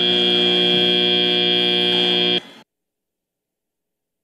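FIRST Robotics Competition field's end-of-match buzzer: one steady buzzing tone lasting about two and a half seconds, then cutting off suddenly. It signals that the match time has run out.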